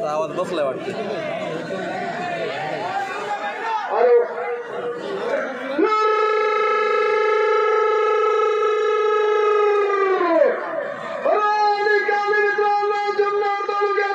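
Mixed voices and chatter over a PA, then a man's long drawn-out call into the microphone through loudspeakers, held on one steady pitch for about four seconds before sliding down and breaking off; a second long held call follows near the end.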